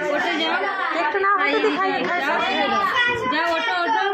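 Many voices talking over one another at once, a room full of children's chatter with no single clear speaker.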